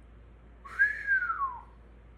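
A man's single whistle, about a second long: it rises briefly, then slides down in pitch, with a breathy rush of air at the start.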